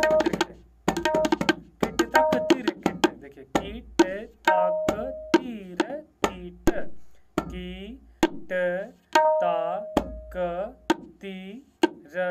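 Tabla being played in a fast, forceful phrase: sharp strokes on the dayan, some ringing at a steady pitch, mixed with bass strokes on the bayan whose pitch slides down after each hit.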